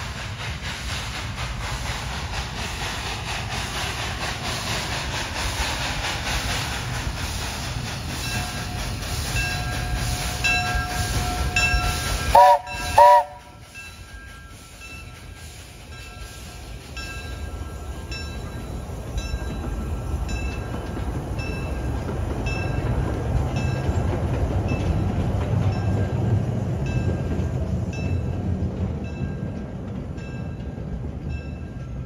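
Steam locomotive (a 1907 Baldwin narrow-gauge engine) hissing steam, then sounding two short, loud whistle blasts about twelve seconds in. Its bell rings steadily through the second half, over a low rumble of the train rolling that grows louder near the end.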